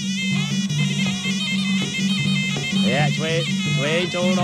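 Traditional boxing ring music led by a shrill reed oboe of the kind played at Khmer and Thai bouts, its wavering melody over a steady low two-note accompaniment. Pitch glides, from a voice or the oboe, bend up and down about three seconds in and again near the end.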